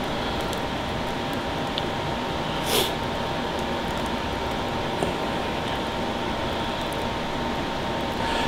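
Steady fan-like whooshing noise with a faint steady hum, broken by one brief hiss a little under three seconds in.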